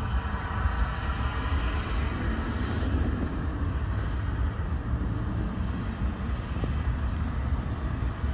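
Airbus A380's four jet engines heard from afar as it climbs away after takeoff: a steady, deep jet noise with no sharp events.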